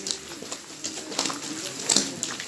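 Footsteps crunching on a gritty, gravelly floor, a step or scuff about every half second to second. A faint low, voice-like sound runs beneath them.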